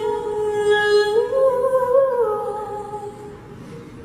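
A solo voice sings one long held note into a microphone with no accompaniment. The pitch steps up a little about a second in and again around two seconds, then falls back and fades out near the end.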